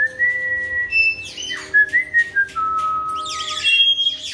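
Long, steady whistled notes: a high one held for about a second, a few shorter notes, then a lower note held for over a second. Short falling chirps and scattered clicks come between them.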